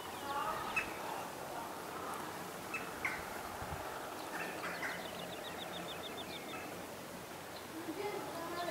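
Small birds chirping, with a fast trill of about a dozen short repeated notes in the middle, over a steady outdoor background.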